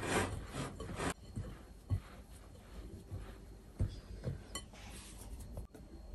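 Hands rubbing margarine into flour in a glass mixing bowl, a scraping rustle loudest in the first second, then fainter, with a few soft knocks.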